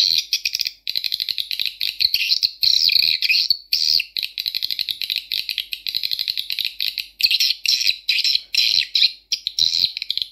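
Recorded swiftlet calls played through Audax tweeters: fast, high chirping trills in runs, broken by brief pauses a few times.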